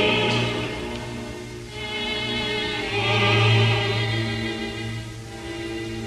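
Orchestral music with operatic singing: held notes sung with vibrato over sustained string chords, the harmony changing every second or so and swelling loudest about three seconds in.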